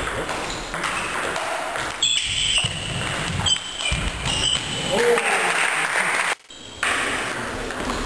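Table tennis rally: the ball clicking off bats and table, with voices in the background. The sound cuts out briefly about three-quarters of the way through.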